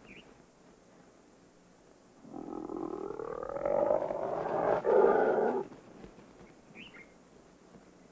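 Spotted hyena growling over its kill: one harsh growl of about three seconds, starting about two seconds in, getting louder and then cutting off suddenly.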